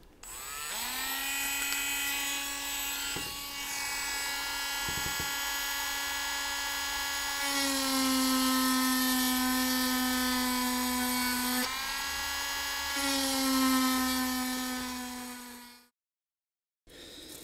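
Small handheld rotary tool spinning up about half a second in and running with a steady high whine. Twice its pitch dips and it gets louder as the bit is pressed into the lure's tail to cut fine striations, and it winds down and stops near the end.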